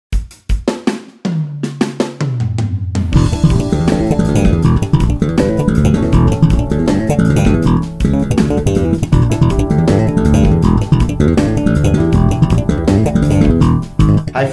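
Electric bass playing a fast slap riff in E minor over a drum beat. A few sharp hits and held low notes open it, then from about three seconds in the full riff runs fast and even with the drums, stopping just at the end.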